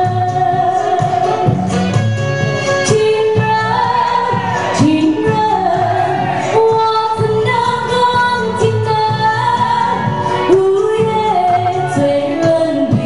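A woman singing into a handheld microphone through a PA system, over backing music with a steady beat; her melody glides and holds long notes.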